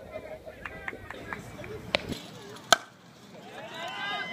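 A sharp crack of a youth bat striking a baseball about two and a half seconds in, with a fainter click a little before it, over faint distant voices.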